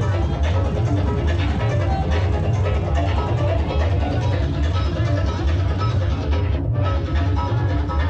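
Club recording of a DJ set of electronic dance music, with a steady, heavy kick-drum beat and busy synth and percussion layers over it.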